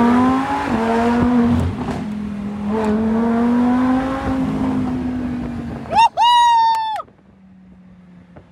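A car engine accelerating hard, its pitch climbing and dropping back at a couple of gear changes, heard from inside a Lamborghini's cabin with another car running alongside. Near the end a car horn sounds: a short toot, then one held for about a second.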